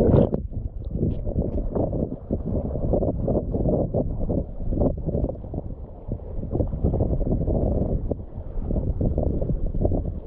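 A short splash as the camera comes up out of the bubbling water, then wind buffeting the microphone in uneven gusts, mixed with handling noise.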